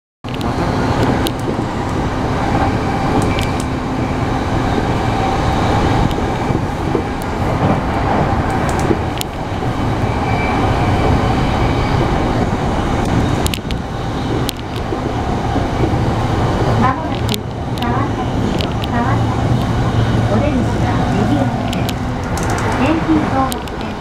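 Cabin running noise of a JR E233 series 3000 electric commuter train: a steady rumble of wheels on the track with faint steady tones underneath and the odd click from the rails.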